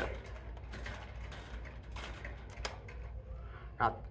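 Hand wire strippers gripping and pulling at the insulation of a fluorescent ballast wire: a scatter of small faint clicks and scrapes, one a little sharper just past halfway, over a steady low hum. The notch is the wrong size for the wire.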